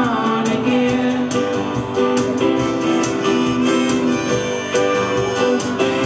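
Live band music: a semi-hollow electric guitar strummed in a steady rhythm under long held notes that shift pitch every second or so.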